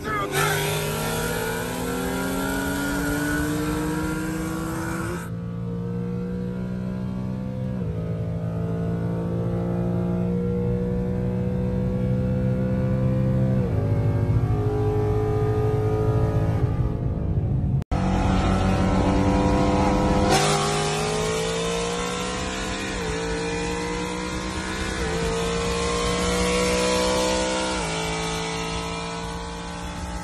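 Car engine at full throttle heard from inside the cabin, its pitch climbing and dropping back at each upshift, several times over. A short break about two-thirds through, after which another hard pull through the gears begins.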